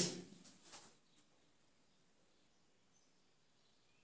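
Near silence: room tone after a man's voice trails off at the very start, with a few faint ticks in the first second and a faint, thin high-pitched tone.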